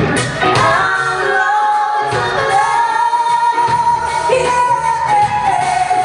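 Live pop song: a male lead singer holds one long high note over band accompaniment, the bass and low end dropping away for a couple of seconds in the middle.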